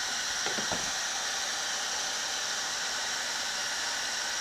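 Ryobi electric heat gun running steadily: an even fan hiss with a high whine, warming a rubber trunk seal to soften it.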